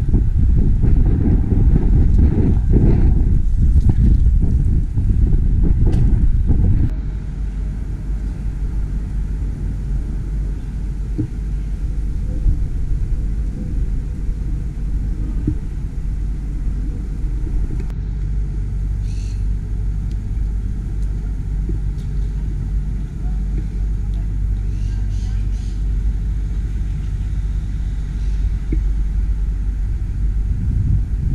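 Outdoor ambience: a steady low rumble, heavier for about the first seven seconds and then settling lower, with faint voices in the background.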